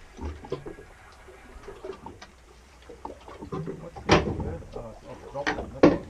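Men's voices calling out loudly, two sharp outbursts in the second half, after a quieter stretch with a few faint clicks.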